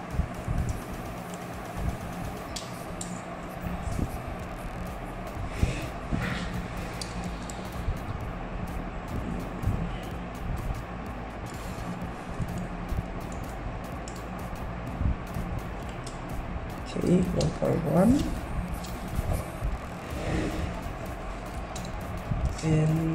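Snap-off hobby knife marking and scoring a white plastic sheet against a steel ruler: a few short, light scratches over a steady low hum.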